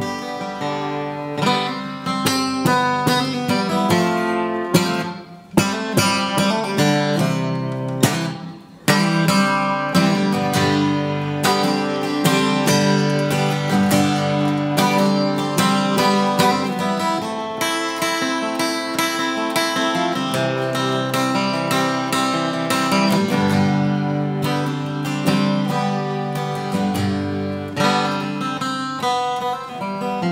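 Acoustic guitar being strummed, with two brief breaks in the playing about five and nine seconds in.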